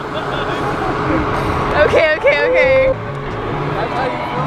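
People's voices against a steady noisy outdoor background, with one voice calling out a few times about two seconds in.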